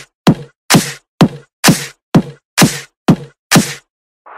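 A dance track's kick drum playing on its own, a steady beat of a little over two hits a second, each a short thud that drops in pitch.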